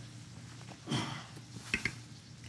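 Spatula scraping whipped egg whites out of a stainless steel mixing bowl into a piping bag, with a few light clicks near the end; a brief voice sound about a second in.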